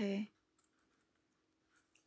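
A voice finishes a word in Hindi, then near silence with a few faint clicks, about half a second in and again near the end.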